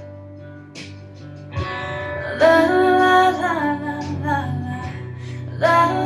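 Music: a country-ballad karaoke backing track with guitar, quiet at first. A woman's voice comes in singing a wordless melody over it about two and a half seconds in, and again near the end.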